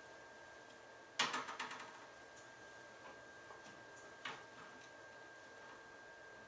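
Quiet room tone with a faint steady high-pitched hum, broken by a quick rattle of small clicks about a second in and a single click a few seconds later.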